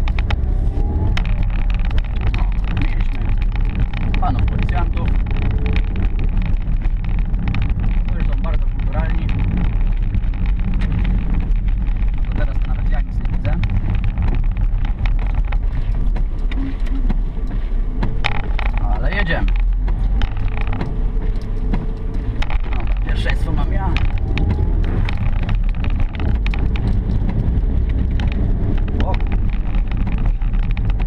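Small car's engine and tyre noise heard from inside the cabin while driving, a steady low drone.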